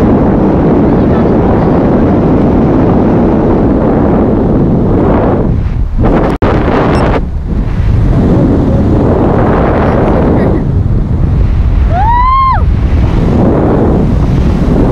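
Loud, steady wind rushing over an action camera's microphone during a parachute descent under canopy, dropping out for a moment about six seconds in. Near the end comes one short high-pitched cry that rises and then falls.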